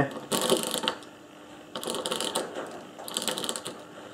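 Briggs & Stratton ball-type recoil starter clutch being turned by hand: three short bursts of rapid clicking as its loose steel balls rattle and jump over the hardened cam face while the hub freewheels. It is the freewheeling ratchet noise that the balls make when the starter cord returns; centrifugal force silences it once the engine runs.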